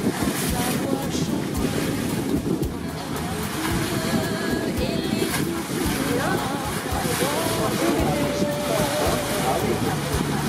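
Small open boat on the sea: steady wind buffeting the microphone over the wash of water around the hull, with faint voices talking in the background.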